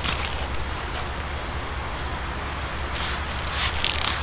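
Trigger spray bottle squirting clean water onto a car's painted hood in short sprays, rinsing off a dish-soap solution. A couple of sprays come right at the start and a quick run of several about three seconds in, over a steady low rumble.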